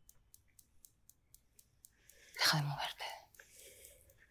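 A brief breathy vocal sound, like a sigh or a whisper, about two and a half seconds in, over a faint, quick, even ticking.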